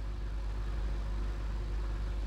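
Steady low rumble of background room noise, with no distinct events.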